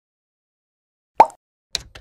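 Sound effects of an animated intro: a single pop a little over a second in, then short, crisp clicks near the end.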